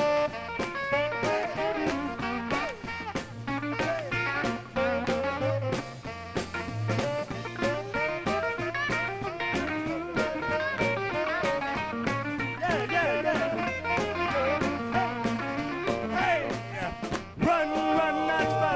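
Live R&B vocal-group performance: a male lead singer over electric guitar, electric bass and drums with a steady beat. There is a brief break near the end before held chords.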